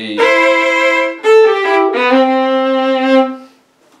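Bowed fiddle playing double stops: a held C-over-E double stop, a few shorter notes, then a long held double stop that fades away shortly before the end.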